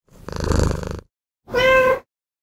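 A domestic cat purring for about a second, then one short meow near the end.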